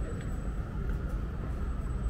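A steady low rumble with a thin, high, steady whine above it and no distinct events.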